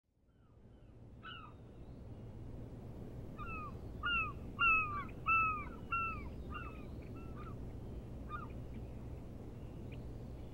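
A bird calling: a run of about eight short calls, each sliding down in pitch, loudest in the middle of the run. They sound over a low, steady ambient rumble that fades in at the start.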